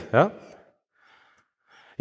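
A man says "yeah?" into a microphone, then pauses, with two faint, short breaths picked up by the microphone during the pause.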